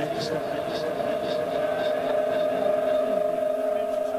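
Stadium crowd ambience under a steady hum of several held tones that do not change in pitch.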